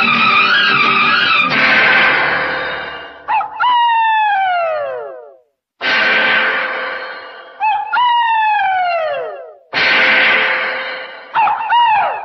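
A falling-pitch sound effect heard three times: each time a rush of noise gives way to a gliding tone that slides down for about two seconds.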